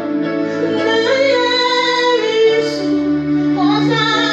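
A woman singing a worship song into a microphone, holding long notes over a sustained instrumental backing.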